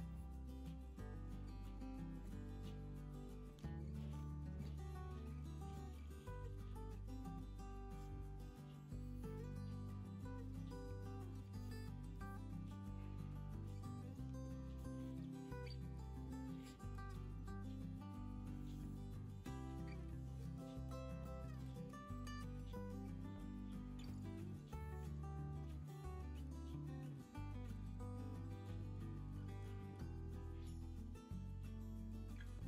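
Quiet instrumental background music, with held bass notes that change every second or two.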